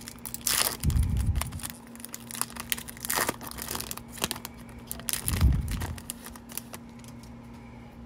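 Foil trading-card pack wrapper being torn open and crinkled by hand: irregular crackling and rustling throughout, with louder bursts about a second in and again about five and a half seconds in.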